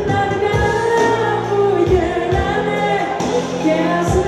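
A woman singing a pop song live into a microphone, with a band accompanying her; she holds long, gliding notes over a steady bass line.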